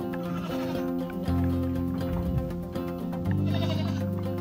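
Background music, with goats bleating twice over it: once shortly after the start and once near the end.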